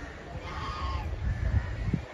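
A bird gives one short, arching call about half a second in, over a low rumble on the microphone that grows louder near the end.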